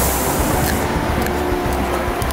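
Low rumble and hiss of a commuter train car standing at the platform as passengers board; an airy hiss drops away a little under a second in.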